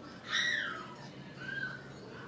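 An animal call: one high call falling in pitch about a third of a second in, then a shorter, fainter call about a second later.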